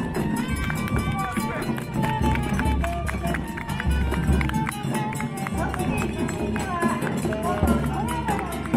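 A chindon band playing as it marches: a saxophone melody over the chindon drum set's small drums and kane gong, struck in a quick, busy pattern, with a large drum adding low beats.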